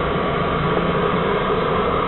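Steady whir of a running pellet boiler's fan, the Mescoli GLUP 29 combined pellet-wood boiler, with a steady hum under it.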